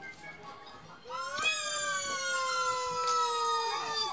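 A cat's long, drawn-out yowl that starts about a second in, rises briefly, then slowly falls in pitch for nearly three seconds.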